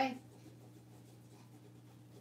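Faint, soft rubbing of fingertips on paper stuck to a small wooden sign, working the paper off in a Mod Podge photo transfer, over a steady low hum.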